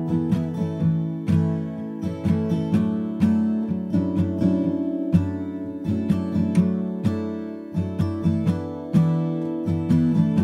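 Background music: a plucked and strummed acoustic guitar piece with many quick notes in a steady flow.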